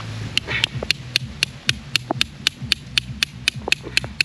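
A tent stake being driven into the ground with the hammer face of a small camping hatchet: quick, even strikes, about four a second.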